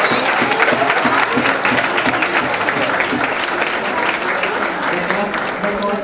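Audience applauding, a dense patter of many people clapping, with voices mixed in; it fades near the end.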